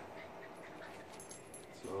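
A dog whimpering faintly.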